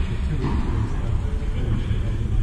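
A steady low rumble fills the background, with faint, indistinct voices over it.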